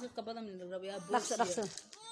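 A person's voice making a drawn-out vocal sound and then a few quick syllables, with a hissing sound about a second in. The words are not made out.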